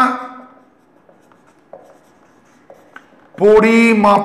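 A man's voice trails off, then a marker pen writes on a whiteboard in a few faint short strokes, and his voice comes back loudly near the end.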